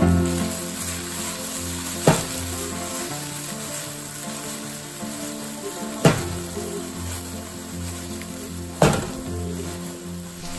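Chopped okra sizzling steadily as it stir-fries in oil in a nonstick pan, with three sharp knocks of the spatula against the pan about two, six and nine seconds in.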